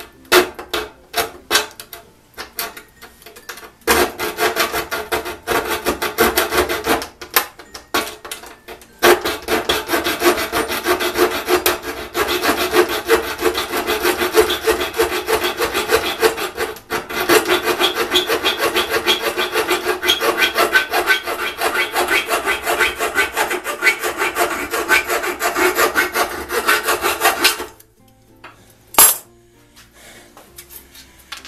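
Keyhole saw cutting through thin sheet steel in short, rapid strokes, sawing away the metal between drilled holes to join them into one opening. The strokes come in short stop-start runs for the first several seconds, then run on steadily from about nine seconds in until they stop a couple of seconds before the end, followed by a single sharp knock.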